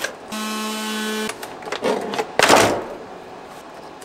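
Cell pack of a Lossigy 12V 100Ah LiFePO4 battery being pulled out of its plastic case: a steady squeak for about a second, then scraping and rustling as it slides free.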